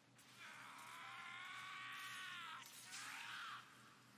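A long, drawn-out anguished cry from a person's voice, held for about two seconds and sagging in pitch at its end, then a shorter second cry that rises and falls.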